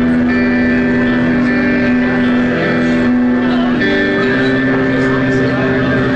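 A live rock band playing a slow song opening: long sustained notes, each held a second or more, with no drums.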